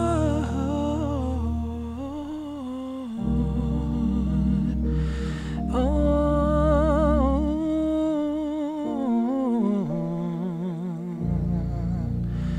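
A male singer performing a slow soul ballad over sustained keyboard chords, holding long notes with wide vibrato and taking an audible breath about five seconds in.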